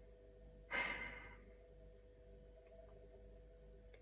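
A man's single audible sigh, a breath out about half a second long, just under a second in. Otherwise a quiet room with a faint steady hum.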